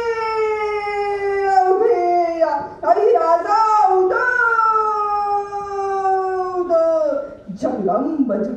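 A woman singing solo into a microphone: long held notes, each sliding slowly downward in pitch, in a few phrases with short breaks, ending shortly before the end.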